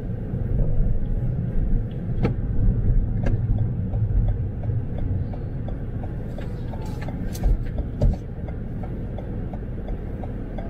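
Car cabin noise at low speed: engine and tyre rumble, with the turn-signal indicator ticking steadily two to three times a second as the car turns. A few sharp knocks come through as well.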